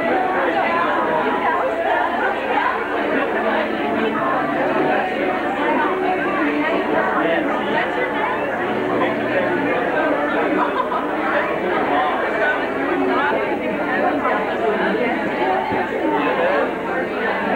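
Crowd chatter: many people talking at once in a steady hubbub of overlapping conversation, with no single voice standing out.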